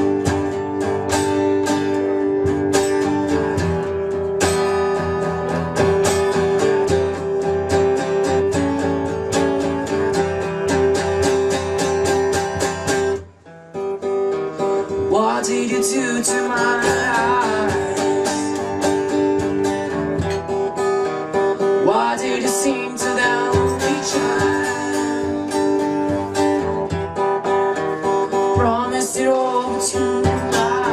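Acoustic guitar strummed in steady chords, breaking off for a moment about 13 seconds in. It then comes back with a voice singing over it.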